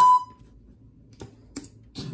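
Cartoon audio playing through the computer's speakers cuts off abruptly just after the start, leaving quiet room tone. About a second later come a few faint, short clicks at the computer, three within half a second.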